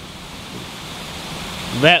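Steady rushing of falling water from an ornamental waterfall, an even hiss with no rhythm.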